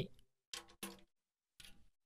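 Light finger taps on a pandeiro's freshly fitted head, two short pitched taps about a third of a second apart and a fainter one near the end, made to check that the head is tuned to an even pitch all around the rim.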